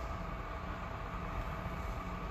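Steady background hum and hiss of the church's room tone, with a faint held tone and a low hum underneath, unchanging throughout.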